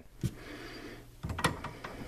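Metal jaws of a hand-operated ProPress crimping tool clicking and knocking against a copper press fitting as they are slipped over it: one click about a quarter-second in, then a quick run of clicks a little past halfway.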